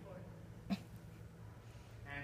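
Quiet room with a steady low hum, broken once by a single short, sharp sound about three-quarters of a second in.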